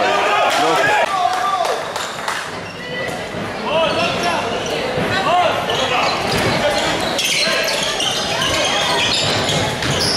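Live handball game sound in a sports hall: a handball bouncing on the wooden court in repeated knocks, shoes squeaking and players shouting.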